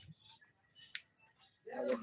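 Faint chirping of night insects in a lull, with a short faint click about a second in; a man's voice starts again near the end.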